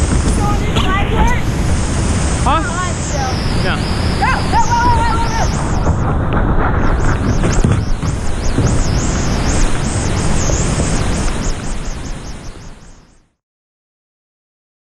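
Loud, steady rush of whitewater from a rapid close to a helmet-mounted camera, fading out about thirteen seconds in.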